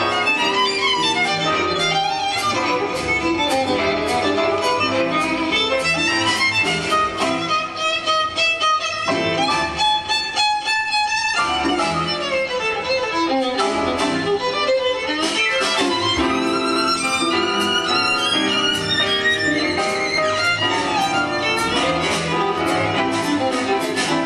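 Live gypsy-jazz (jazz manouche) music: a violin leads with fast melodic runs, backed by a jazz rhythm section and a symphony orchestra.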